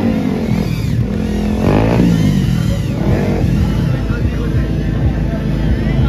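Motorcycle engines revving, with a quick rise in revs a little under two seconds in, over crowd voices.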